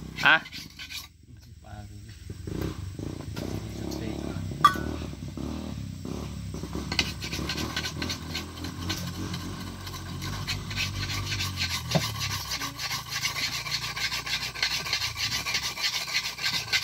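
Sharpening stone rubbed in quick back-and-forth strokes over the steel blade of a dodos, the oil palm harvesting chisel, a steady scraping that sets in about seven seconds in and grows louder toward the end. The blade is being honed to a sharp edge for harvesting.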